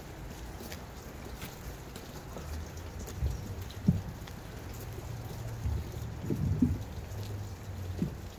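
Wind buffeting an outdoor microphone: a steady low rumble with a few heavier low thumps about three, four and six seconds in.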